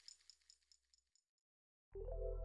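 Faint jingling ticks dying away over the first second, the tail of an edit's whoosh transition effect, then silence; background music starts right at the end.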